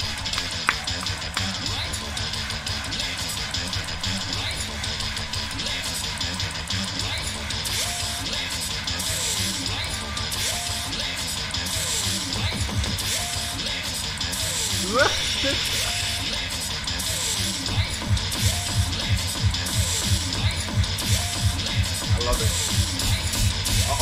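Layered beatbox loops from a loop station performance, with a steady bass line and a cheering crowd under it. In the last few seconds short rhythmic hits come thicker as the music builds toward a drop.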